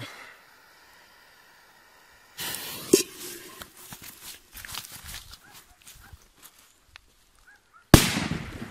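Piromax CRASH firecracker (1.2 g charge) exploding under an upturned frying pan: a single sharp, loud bang near the end, trailing off in a short echo. Before it come quieter rustling and a few light knocks.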